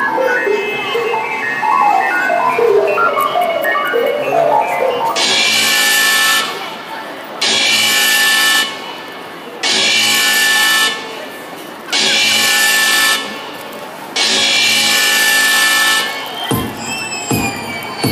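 Dance backing track played over stage speakers: a melodic passage, then five loud held chord blasts about two seconds apart, then falling swoops near the end.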